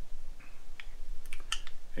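Light plastic-and-metal clicks as a CR2032 coin-cell battery is handled into the opened shell of a Harley-Davidson key fob, with a few faint ticks and then a quick cluster of about five sharp clicks a little past halfway.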